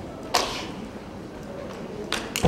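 A single sharp slap or snap about a third of a second in, from a kenpo practitioner's hand strike during a form, with a short fading tail in a large hall.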